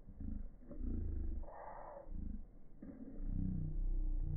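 Wind buffeting the microphone: uneven low rumbling that swells and fades in gusts, with a brief hiss about one and a half seconds in.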